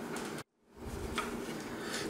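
Quiet room tone, broken by a brief dead-silent dropout at an edit about half a second in, with one faint tick a little after a second.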